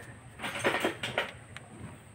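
Hand and rag wiping around the injectors and rocker arms of an open cylinder head. A few quiet clicks and rustles come between about half a second and a second and a quarter in.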